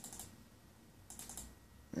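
Computer keyboard keys tapped in two quick bursts: three taps at the start and about four more a second in. This is the sound of stepping through menu shortcuts in diagnostic software.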